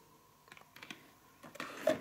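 Small cardboard perfume boxes being handled and set down in a clear organiser: a few faint light clicks, then a louder cluster of clicks and rustling near the end.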